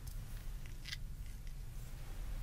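Stethoscope chestpiece and hand brushing and tapping against the microphone during a mock heart check: a few short scratchy clicks, the sharpest about a second in, over a steady low rumble.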